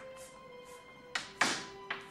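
Chalk strokes on a blackboard as an equation is written: three short taps and scrapes in the second half, over soft film-score music with steady held notes.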